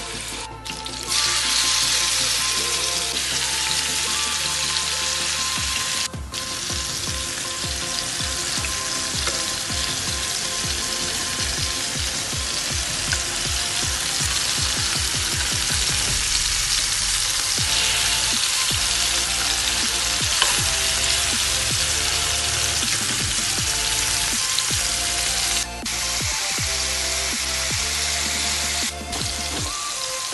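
Seasoned chicken breasts sizzling as they fry in hot ghee in a grill pan. The sizzle jumps louder about a second in and then holds steady, dropping out briefly a few times.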